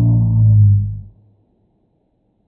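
A man's voice slowed far down, heard as a deep, drawn-out drone that cuts off about a second in.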